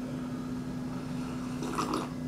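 A person drinking milk from a glass: quiet sipping, with a brief swallow near the end, over a steady low hum.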